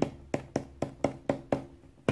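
Gloved fingertips tapping the plastic electrolyte container seated on a scooter battery, a steady series of light knocks about four a second. The taps shake the last drops of acid out of the container and into the battery cells.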